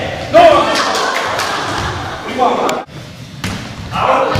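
Thuds of a ball being struck and landing on a hardwood gym floor, echoing in a large hall, with players' voices calling out over them. The sound drops off abruptly a little under three seconds in.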